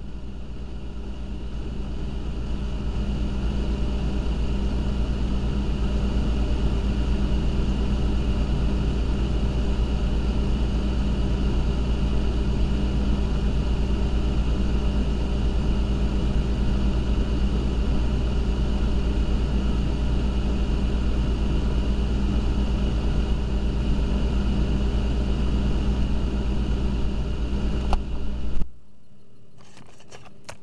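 Steady hum of a freezer's compressor and fan, heard from inside the closed freezer. It swells over the first few seconds, holds steady, then gives a couple of knocks near the end and cuts off suddenly.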